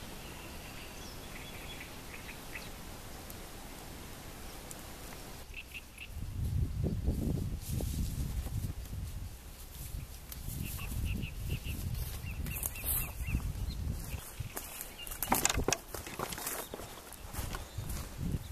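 Outdoor lakeside ambience: faint birds chirping over a steady hiss. From about six seconds in, wind buffets the microphone in low, uneven gusts, and a few sharp clicks come near the end.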